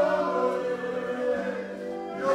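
A group of voices singing together in long held notes, like a choir, the pitch stepping from note to note.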